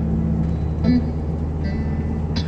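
Steady low engine and road hum inside a moving car's cabin.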